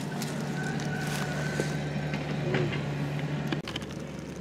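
Hooked carp splashing and thrashing in shallow water among water hyacinth as it is pulled to the bank, with scattered sharp splashes. A steady low hum runs underneath and cuts off suddenly near the end.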